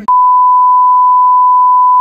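Loud, steady censor bleep: a single pure beep tone dubbed over the speech, which it silences completely, starting abruptly as a bleeped-out phrase begins.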